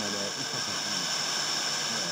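FM radio tuned to a distant station received over unstable tropospheric propagation: a weak signal with steady static hiss and faint Turkish speech coming through it.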